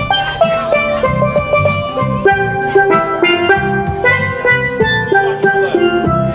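A steelpan played with sticks, a quick melody of short ringing notes, over a steady backing beat of bass and drums.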